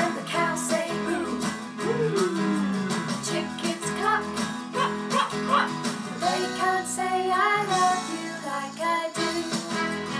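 Children's action song with animal noises, sung by voices over guitar accompaniment.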